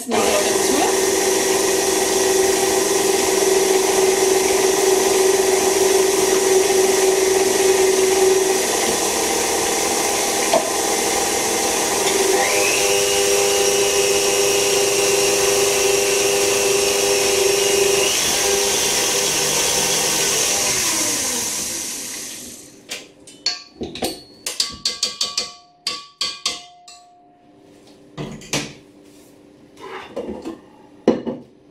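KitchenAid tilt-head stand mixer running steadily as it beats milk into a butter and egg-yolk cake batter, with a rising whine joining in for several seconds about halfway. The motor winds down a little over 20 seconds in, then clinks and knocks follow as the bowl and mixer are handled.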